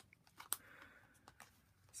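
Faint handling of a plastic pocket-letter page sleeve with paper inserts on a countertop: a few light ticks, the sharpest about half a second in, and a soft rustle.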